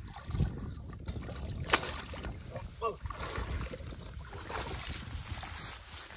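Water splashing and grass rustling as a hooked rohu is hauled in and carried up out of a river, with wind buffeting the microphone and a sharp knock a little under two seconds in.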